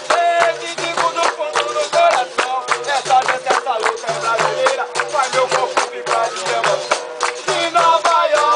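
Capoeira roda music: berimbaus played in a steady repeating rhythm that steps between two low notes, with sharp percussive strikes on the beat and group singing over it.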